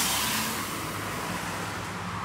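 A car engine running steadily at idle: a low, even hum under a hiss of outdoor background noise.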